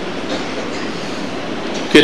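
Steady, even background noise, a hiss with a low rumble and no clear tone, heard through the amplified sound system in a pause of speech.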